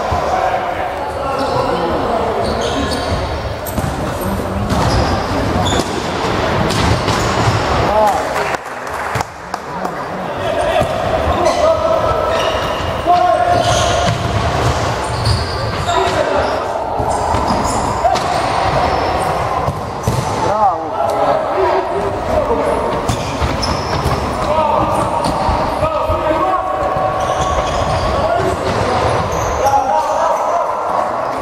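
Futsal being played in a sports hall: players' shouts and calls with repeated thuds of the ball being kicked and bouncing on the wooden floor, echoing in the hall.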